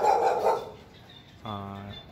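A dog barks once, a single short loud bark at the very start.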